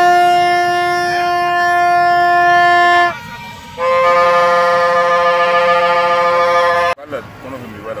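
Two long, steady blasts on a plastic supporters' horn, each about three seconds, the second higher in pitch than the first. The second blast cuts off suddenly near the end.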